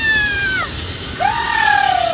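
A woman's long, high-pitched excited screams: the first slides slowly down in pitch and stops about half a second in, and a second, lower scream starts a little after the middle and falls gradually, over a steady background hiss.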